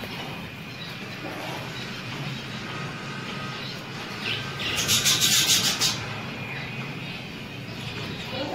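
A budgerigar bathing in a small bath dish on the cage, flapping its wings in the water: a rapid flurry of splashes lasting about a second, around five seconds in, over a steady low hum.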